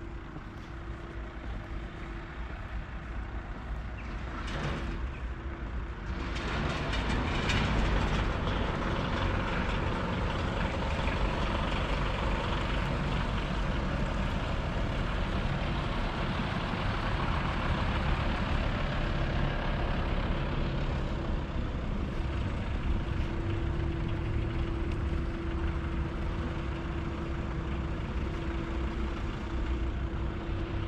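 A motor vehicle running close by in a car park, engine and tyre noise growing louder about six seconds in and staying up, over a steady low hum.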